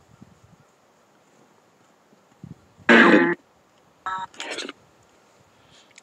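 A phone's ghost-hunting app gives three short electronic bursts after a quiet start. The first, about three seconds in, is the loudest, and two briefer ones follow a second later. Each starts and stops abruptly.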